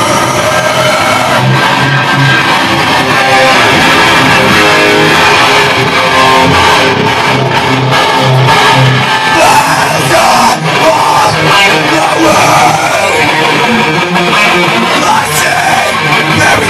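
Rock band playing live, loud and continuous, with electric guitar to the fore.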